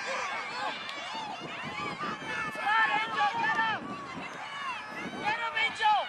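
Several voices yelling and cheering at once, high-pitched shouts overlapping as spectators urge on a ball carrier in a football game. The shouting gets louder about halfway through and peaks again near the end.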